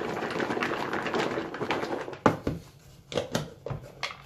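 Lidded plastic tub of chopped beetroot and apple being shaken to mix it, the pieces shuffling and rattling inside. About two seconds in the shaking stops and the tub knocks down on a wooden cutting board, followed by a few lighter knocks as it is handled.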